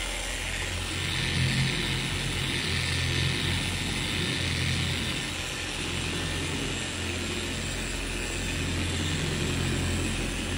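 Bauer 7.5-amp, 6-inch long-throw random-orbit polisher running steadily on speed setting 3 with a steady hum, its foam polishing pad working polish over a car's painted hood.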